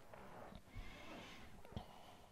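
Quiet pause with faint room tone: a man's soft breath, and one small click near the end.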